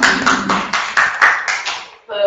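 A small audience applauding, a brisk patter of hand claps that dies away near the end.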